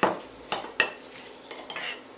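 A muddler working lemon slices, a basil leaf and sugar in a glass: a few sharp knocks against the glass in the first second, then a longer scraping grind near the end.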